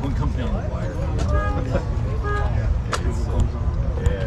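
People talking, over a steady low rumble, with a sharp click about three seconds in.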